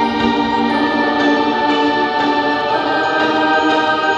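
Music with a choir singing long, sustained chords at a steady, loud level.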